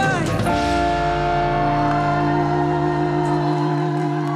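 Live band finishing a song: a quick falling run, then one chord held and left ringing, its lowest notes dropping away near the end.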